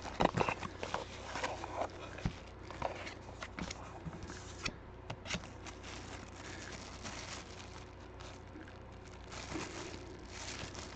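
Plastic wrap and packaging crinkling and rustling in the hands as a baseball is unwrapped, with scattered small clicks.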